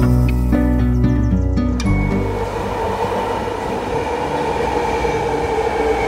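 Background music for the first two seconds, then a subway train running through the underground station: a steady rushing noise with a held, two-toned whine.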